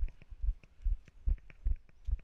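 Footsteps of a person walking briskly on brick paving, heard as deep, even thumps about two and a half a second through a body-worn camera, with faint light ticks between them.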